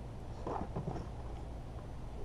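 A steady low hum, with a brief faint rustle about half a second in.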